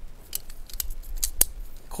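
Light metallic clicks and taps of the aluminium plates of a CQ Quick Connect quick-release antenna mount being handled and fitted together, with one sharp click about one and a half seconds in.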